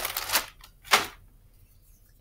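Clear plastic zip-top bag crinkling as it is handled, in two short bursts: one at the start lasting about half a second and a sharper one about a second in.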